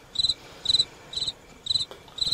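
Cricket chirping, about two chirps a second, each chirp a quick trill of a few pulses: the stock 'crickets' sound effect for an awkward silence.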